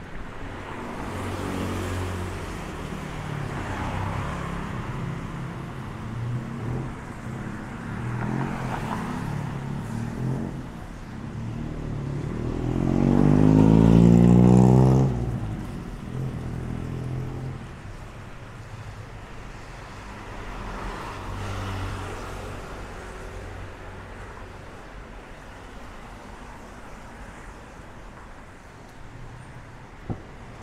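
Street traffic with vehicles passing one after another. About halfway through, one engine passes close and accelerates, its pitch rising steadily; it is the loudest sound and fades quickly once past.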